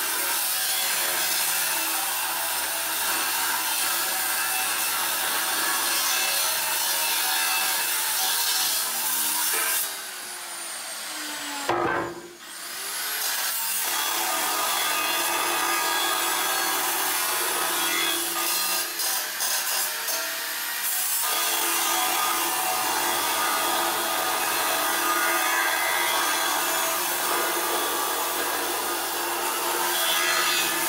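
Makita 9-inch angle grinder with a metal cutting disc grinding through a steel RSJ beam, a steady harsh grinding noise. About ten seconds in the disc eases off the cut for a moment and the motor's pitch shifts, then it bites back in; the cut lightens again briefly about twenty seconds in.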